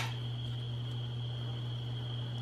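Steady low electrical hum with a thin, steady high-pitched whine above it, typical of fluorescent shop lights, and a single sharp click right at the start.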